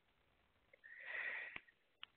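A person sniffing once through the nose, a short hiss under a second long, ending with a brief click.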